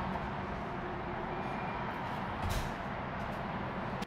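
Steady urban road-traffic noise, a constant rumble and hiss, with a brief louder bump about two and a half seconds in.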